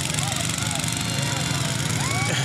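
A petrol engine running steadily with a fast, even low beat, under scattered voices from a crowd.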